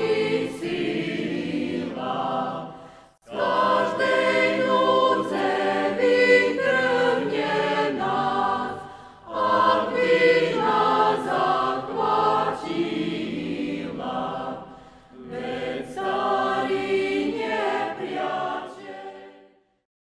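A choir singing a slow hymn in long held phrases, with brief breaths between phrases, fading out near the end.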